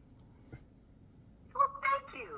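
Quiet room tone with a faint click about half a second in, then near the end a short, high-pitched vocal sound from a person.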